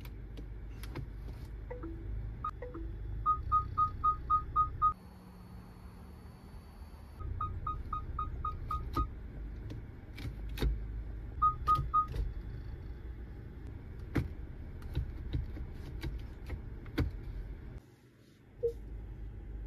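A car's electronic chime beeping in quick runs of short high beeps, about four or five a second: seven, then eight after a pause, then three, over a low rumble from the car. Sharp clicks come throughout, from buttons being pressed on the centre console.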